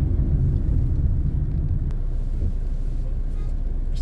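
Steady low rumble of a car on the move, heard from inside the cabin: engine and tyre noise.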